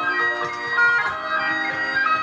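Bagpipe music, a quick tune changing note several times a second, played for Highland dancing, with faint low knocks of dancers' feet on the stage.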